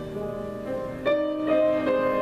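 Grand piano playing a slow passage of held chords. New chords are struck about a second in and again near the end.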